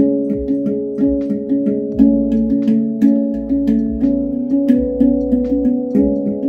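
Handpan played with both hands in a 3-over-2 polyrhythm: a quick run of struck, ringing steel notes, with a stronger stroke roughly once a second.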